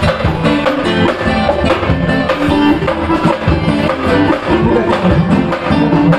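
Live band playing upbeat dance music: a steady percussion beat from drum kit and tall hand drums, with guitar.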